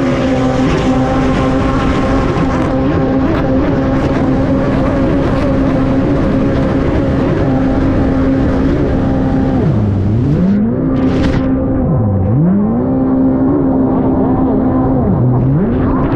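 Kawasaki stand-up race jet ski's engine held at high revs under full throttle, with rushing water spray; the revs drop sharply and climb straight back three times in the second half.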